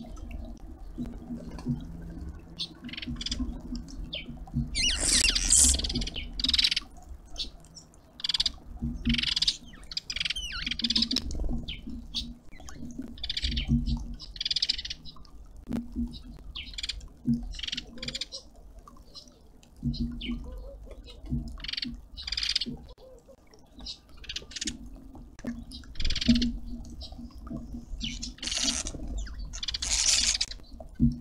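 Small birds at a feeder chirping and calling: a steady run of short, sharp chirps, with a longer, louder harsh call about five seconds in and another near the end.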